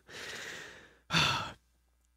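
A man sighs: a long, soft breathy exhale, then a shorter, louder breath about a second in.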